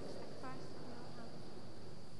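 Faint, distant voices of the congregation speaking the response to the priest's invitation to prayer, over a steady high-pitched whine and the room noise of a large church.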